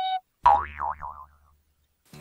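A held flute-like note from the intro music cuts off just after the start; then a cartoon 'boing' sound effect, a springy pitch that wobbles up and down and dies away within about a second.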